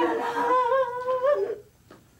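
A man wailing in grief: one long, high, wavering cry held for about a second and a half, then breaking off.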